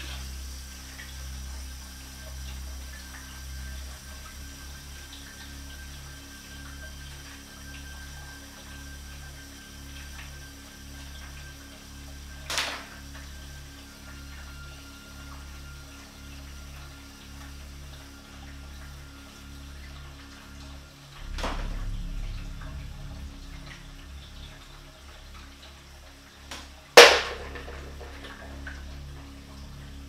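Objects knocking in a quiet kitchen: a sharp click about a third of the way through, a short rush of noise about two-thirds through, and a loud bang near the end, the loudest sound. A low, pulsing drone of background music runs underneath.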